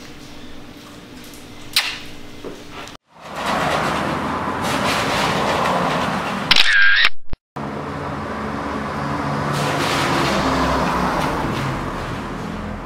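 Camera shutter sounds: a sharp click about two seconds in and a loud, short shutter sound just past halfway, over a steady hiss. The sound drops out briefly twice.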